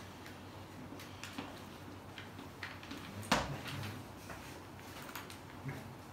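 Chalk tapping against a blackboard in short, scattered clicks, with one sharp, louder knock a little over three seconds in.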